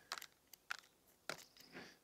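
Bonsai tweezers scraping and picking compacted soil and moss from between forsythia roots: a few faint, short scratchy crunches spread unevenly.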